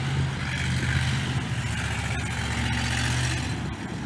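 A steady low hum, motor-like, over a broad hiss; the hum drops away about three and a half seconds in.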